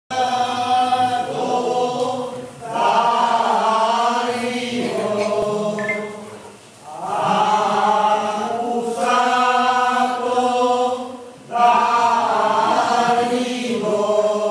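A group of voices chanting a slow sacred song in long held phrases of about four seconds, each broken by a short pause for breath.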